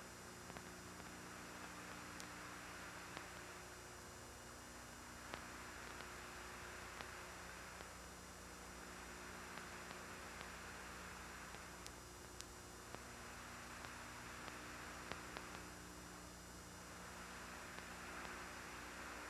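Faint steady hiss with a low mains hum and occasional light clicks: the background noise of an open communications audio line with no one transmitting.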